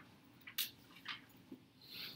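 Faint, scattered short rustles and scratches, three or four brief strokes in two seconds, over a low steady room hum.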